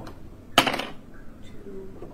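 A voice calling out a dice result, 'two', with one short, sharp noisy burst about half a second in.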